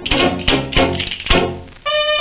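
1920s dance-orchestra record: a short percussion break of four sharp strikes with a hissy, splashy ring between them, dying away near the end.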